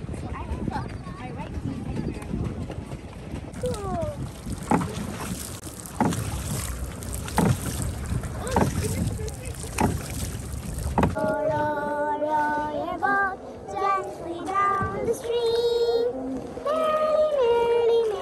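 Wind buffeting the microphone over splashing water from a moving pedal boat, with sharp splashes coming a little over a second apart in the middle stretch. About eleven seconds in, the sound cuts to a voice singing held notes that step up and down in pitch.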